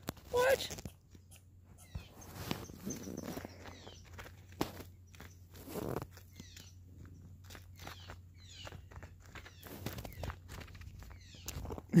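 A chipmunk moving about on a person's lap and hand, making soft, irregular clicks and rustles.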